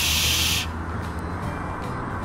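A man hushing with a sharp, drawn-out "shh" lasting about two-thirds of a second, then a low steady background rumble.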